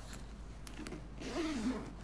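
Metal zip on a leather laptop bag being run along once, a short rasp lasting under a second, a little past the middle.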